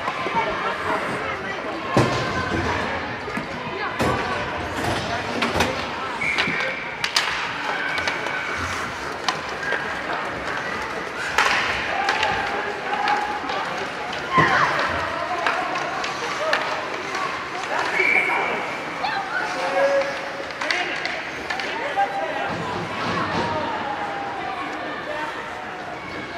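Ice hockey game sound in an indoor rink: scattered voices and calls from players and spectators over repeated sharp knocks of sticks and puck, with the noise of skates on ice.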